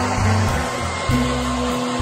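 Hand-held hair dryer blowing steadily on braided hair, over background guitar music.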